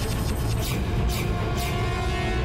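Tense, suspenseful background score with a deep low rumble and held tones, plus a few short whooshes in the second half.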